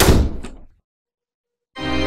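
A door slamming shut: one heavy thunk with a short ringing decay and a lighter knock about half a second later. Near the end, organ music begins.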